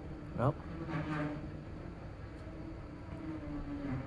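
A man's voice: a short rising 'mm' about half a second in, then quiet humming under his breath, held on one low note until near the end.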